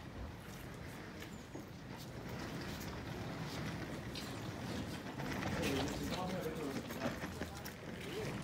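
Outdoor background noise with indistinct voices that are clearest a little past the middle, over a steady low rumble, with scattered short clicks and knocks.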